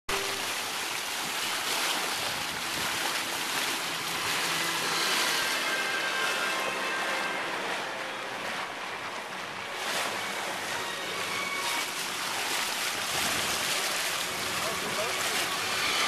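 Water rushing and splashing along the hull of a sailboat under way, a steady wash of noise with wind on the microphone.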